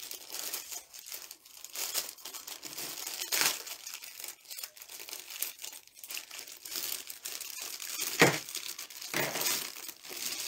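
Clear plastic bag crinkling and rustling continuously as hands handle a bagged jewelry set, with one sharp, louder crackle about eight seconds in.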